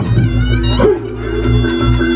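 Loud Reog gamelan music accompanying the barongan dance: a lead melody with short bending, sliding notes over drums and a steady pulsing low beat, settling into held tones with an even, quick struck rhythm near the end.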